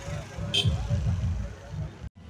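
Motorcycle engines running with an uneven low rumble under indistinct voices, with a brief high-pitched tone about half a second in.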